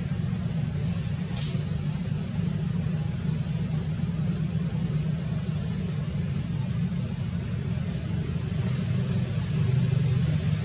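A steady low rumble, with one brief faint high-pitched chirp about a second and a half in.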